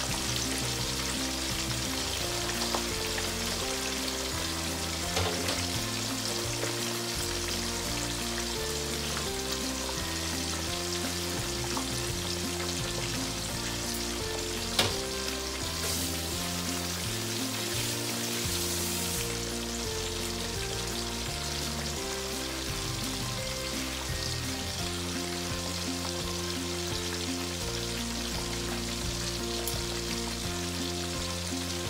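Fish pieces deep-frying in hot oil in a pan, a steady sizzle with a few sharp pops, the loudest about halfway through. Background music with sustained chords that change every second or so plays under it.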